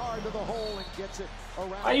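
A basketball bouncing on a hardwood arena court in NBA game audio, under a man talking. A louder man's voice starts near the end.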